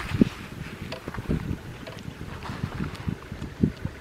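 Wind buffeting the microphone: irregular low rumbles, with two stronger gusts about a quarter second in and near the end.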